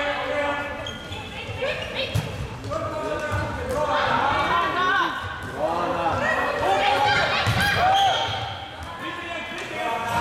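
Floorball play in a sports hall: players calling and shouting to one another over the taps and clacks of plastic sticks and the hollow plastic ball on the court, with the hall's echo.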